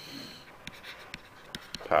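A stylus scratching and tapping on a tablet screen while drawing: one short scratchy stroke at the start, then a few light ticks. A man speaks one word at the very end.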